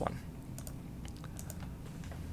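A few light clicks from computer keys or buttons, scattered across two seconds over a low steady hum.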